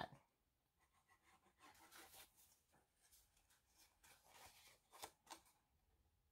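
Very faint rustling and scraping of cardstock paper as glue is run along its tabs and the tabs are pressed together by hand, with a couple of sharper little taps about five seconds in.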